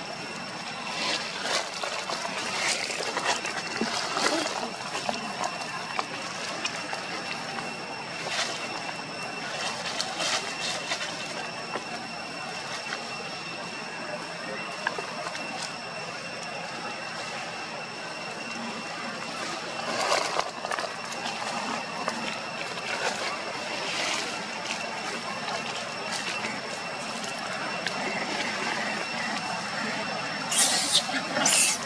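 Outdoor forest ambience with a steady high-pitched insect drone, broken by scattered short, louder sounds; the loudest comes about 20 seconds in.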